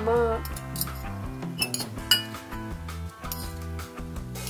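Metal spoon and fork clinking against a clay pot while lifting out glass noodles: a few sharp clinks, the loudest about two seconds in.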